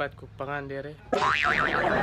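A short vocal sound, then about a second in a sudden loud cartoon-style "boing" sound effect cuts in, its pitch wobbling quickly up and down before settling, over a noisy backing that carries on.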